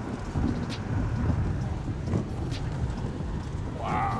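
Car cabin noise while driving on a wet road: a steady low rumble of tyres and engine with a few faint clicks.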